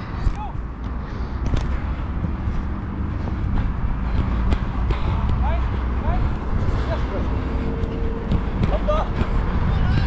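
Wind rumbling on a chest-worn action camera's microphone while its wearer runs on an artificial-turf football pitch, with scattered knocks of footfalls and indistinct shouts of players in the distance.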